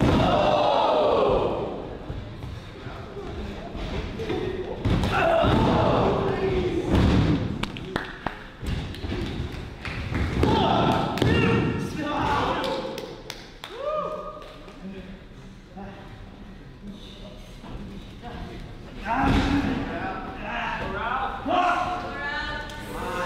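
Wrestlers' bodies hitting the ring canvas in repeated heavy thuds, with shouts and yells from the wrestlers and crowd in between.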